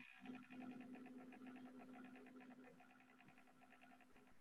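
Near silence, with a faint steady buzzing hum that fades out about two-thirds of the way through.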